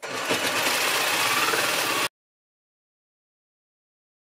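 Handheld power saw cutting notches into a wooden cabinet panel, running at full speed and then cutting off abruptly about two seconds in.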